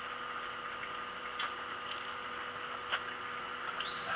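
Three light clicks from a steel tape measure being pulled out and handled, over a steady hum and hiss.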